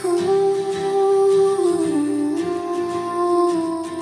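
Wordless humming vocal in a pop song's outro: long held notes that dip in pitch about halfway through and settle back, over soft backing music.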